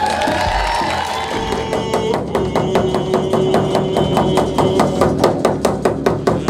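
Hand-held frame drums beating a fast, even rhythm, about five beats a second, starting about two seconds in, under a long held note.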